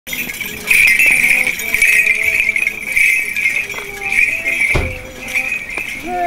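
The small bells on a swinging Orthodox censer jingling steadily, with men's voices chanting held notes beneath, and a single thump about three-quarters of the way through.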